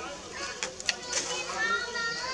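Infant long-tailed macaque calling in short, high squeaks. A few sharp clicks come about halfway, and a longer call rising in pitch comes near the end.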